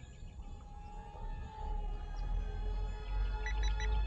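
Steady high-pitched whine of a 1S-LiPo micro RC jet's electric motor in flight, with a low wind rumble on the microphone building up. A few short high chirps sound near the end.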